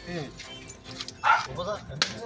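Voices of people in a gathered crowd, in short broken snatches, with a short loud noisy burst about a second and a quarter in.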